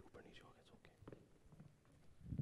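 Near silence with faint murmured voices, like quiet whispering, and a few soft clicks.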